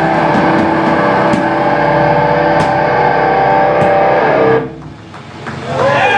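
Distorted electric guitars of a metal band ringing out a sustained, droning chord through amplifiers, cutting off suddenly about three-quarters of the way through, leaving a brief lull at the end of the song.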